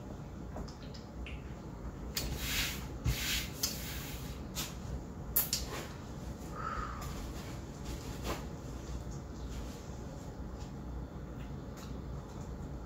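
Soft, scattered sounds of someone tasting a frothy beer from an aluminium can: a few quiet sips and breaths with brief rustles between long quiet stretches, and one short high-pitched squeak a little past halfway.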